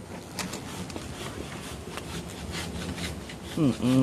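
Hand saw cutting through a tree branch, a series of irregular rasping strokes.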